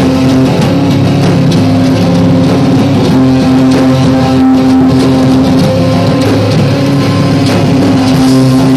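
Live band playing loud heavy rock: distorted electric guitars holding sustained chords over a drum kit and cymbals, steady and without a break.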